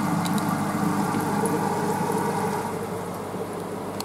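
Steady low hum of running aquarium equipment, with a few faint clicks just after the start; it grows a little quieter near the end.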